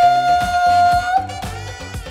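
A man's voice holding one long, steady high note, ending a little past one second in, over background music with a regular beat that carries on.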